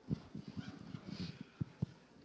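A run of soft, low thumps and knocks, with two sharper knocks near the end.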